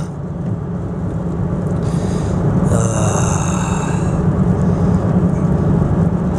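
Steady road and engine noise heard from inside a car cabin at highway speed on a wet road, a low rumble throughout. About two and a half seconds in, a brighter hiss rises and lasts a little over a second.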